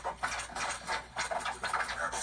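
DJ record scratching in a show's intro track: rapid scratchy bursts, about four or five a second.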